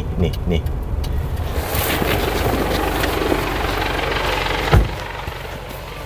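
Car engine idling, heard from inside the cabin, with movement noise as a passenger climbs out. The door then shuts with a single thump nearly five seconds in.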